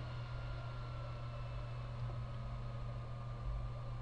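Steady low hum and faint hiss of background noise, with one faint click about two seconds in, typical of a computer mouse button.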